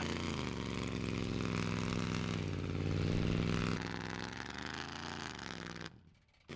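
A straight-piped, dual-exhaust engine on an old Coachmen motorhome running under throttle as the motorhome accelerates away, towing a recovery rope. The engine note bends in pitch and grows louder to about halfway, then fades as the vehicle draws off. It cuts off abruptly at the end.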